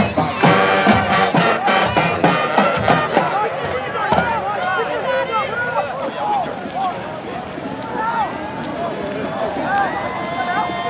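Brass band music with a beat for the first three seconds or so, then the overlapping shouts and cheers of many voices.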